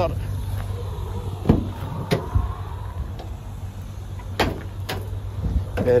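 Several sharp clicks and knocks from a Citroen Berlingo van's rear door handle and latch as the rear door is opened, over a steady low hum.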